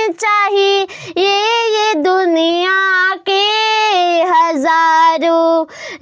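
A boy singing a Hindi devotional bhajan solo and unaccompanied. He holds long notes with small pitch slides and takes short breaths between phrases.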